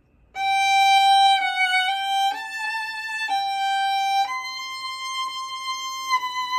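Solo violin playing a slow line of single bowed notes, beginning about a third of a second in. Five notes move within a narrow range, then a higher note is held for nearly two seconds.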